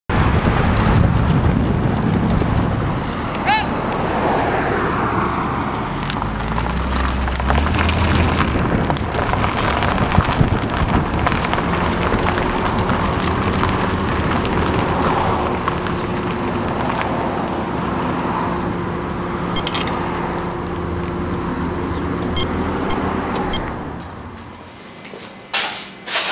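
Outdoor city street noise: traffic and people's voices mixed together. A steady low hum joins about halfway through and stops just before the end, with a few sharp clicks near the end.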